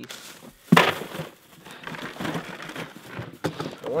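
Plastic bags crinkling and rustling as food is dug out of a plastic cooler. There is a sharp knock less than a second in, the loudest moment.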